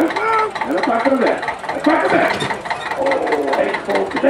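Men's voices talking over a small tractor engine idling steadily.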